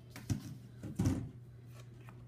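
Two short, soft knocks with a papery rustle, about two-thirds of a second apart: paper planner pages being handled and set down on a desk.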